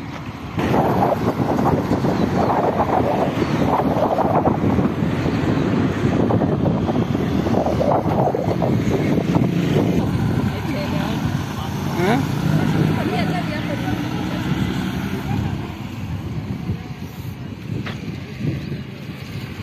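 Wind buffeting the phone's microphone, a loud fluttering rumble that starts suddenly about half a second in, with people talking under it.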